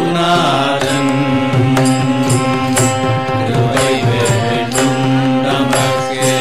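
Devotional bhajan music in Carnatic style: chanted singing over a sustained harmonium and a violin, with sharp percussion strokes keeping time about twice a second.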